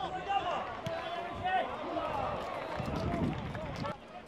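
Footballers' voices calling out on the pitch during open play, with a few thuds of the ball being kicked.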